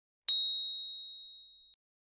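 A single high, bright "ding" sound effect for a notification-bell icon: one strike about a quarter second in, its clear tone fading away over about a second and a half.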